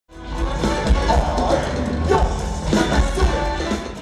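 Live rock band music with a male lead vocal, over heavy bass and drums.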